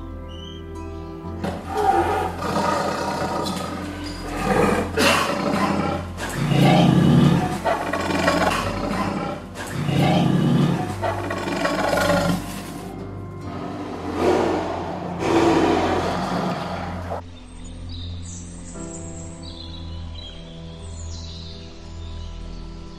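A big cat giving a series of loud, rough growls and roars over soft piano music; the calls stop about seventeen seconds in, leaving the piano with a few faint high chirps.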